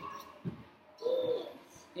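A toddler's short cooing "ooh", one pitched call that rises and falls, about a second in, after a soft thump.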